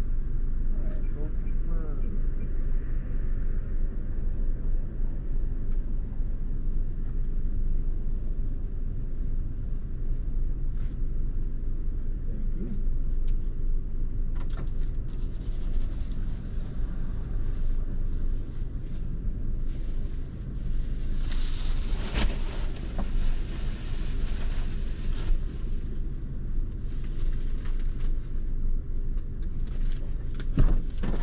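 Parked car's engine idling steadily, heard from inside the cabin with a door open. Rustling and knocks of grocery bags being loaded into the back seat come and go, loudest a little past the middle.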